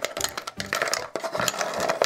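Wooden game pieces clattering as a wooden spoon stirs them around inside a cardboard canister: a rapid, uneven run of small clicks and knocks.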